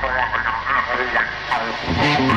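Indistinct voices talking over a low steady hum, the sound thin and narrow like a radio. Music comes in right at the end.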